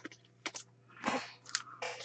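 Irregular crinkling and rustling of trading-card pack wrappers and cards being handled, in short bursts with a longer one about a second in, over a faint steady hum.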